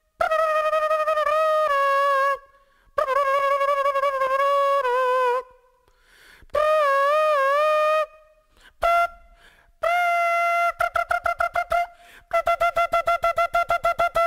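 Instrumental song intro: a solo flute-like melody with vibrato, played in phrases of a second or two with short silences between them. It then breaks into quick repeated staccato notes, about five or six a second, over the last few seconds.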